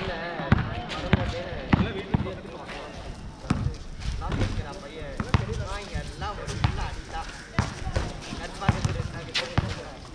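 Basketball bouncing on a hard court: irregular sharp thuds about once a second, as in dribbling during one-on-one play, with voices in the background.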